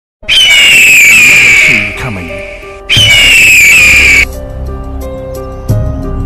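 Two loud, slightly falling bird-of-prey screams, each about a second and a half long, the second starting about three seconds in, laid over intro music.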